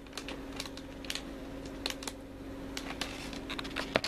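Hands handling plastic candy-kit packaging, making scattered light clicks and crinkles at an irregular pace, over a faint steady hum.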